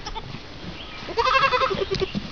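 A young goat kid bleating once, a single quavering call starting about a second in.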